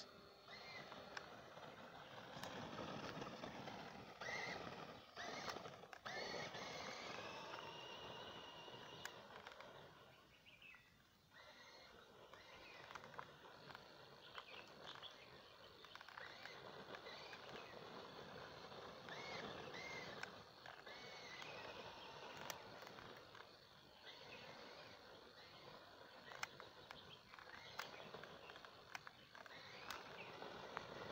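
Faint, distant whine of a small RC rock crawler's two 380 brushed electric motors, overvolted on an 11.1 V lipo, rising and falling in pitch as it speeds up and slows while driving on concrete, over quiet outdoor background noise.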